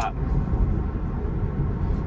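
Steady low road and tyre noise inside the cabin of a Tesla electric car moving at around 30 mph.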